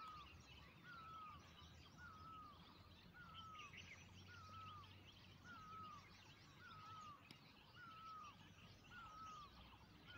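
Very faint outdoor ambience: a bird repeats a short, curved call about once a second, with fainter twittering behind it.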